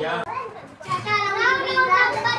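A group of children's high-pitched voices talking and calling out over one another, louder from about halfway through.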